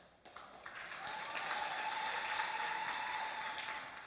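Audience applauding, building over the first second, holding steady and dying away near the end, with a thin steady tone running through the middle of it.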